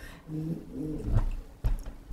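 A woman's voice making a brief hesitant, drawn-out sound mid-sentence, followed by a low rumble and a single thump a little past the middle.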